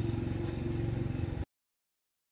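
An engine running steadily at idle, with an even low hum and fine pulsing, cut off suddenly about one and a half seconds in.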